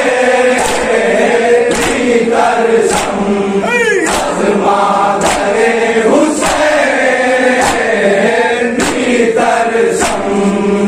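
A group of men chanting a noha together in a slow lament, with loud, evenly spaced chest-beating (matam) slaps about once every second and a quarter.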